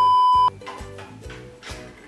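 A single steady high-pitched beep, about half a second long, cuts in over a swear word: an edited-in censor bleep. Soft background music plays on after it.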